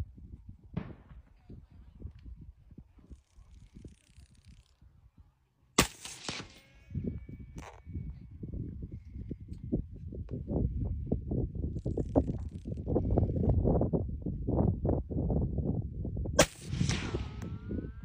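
Two shots from a SIG Tread 762 rifle, about ten seconds apart, one about six seconds in and one near the end, each trailing off in an echo. Under them runs an uneven low rumble of wind on the microphone that grows louder after the first shot.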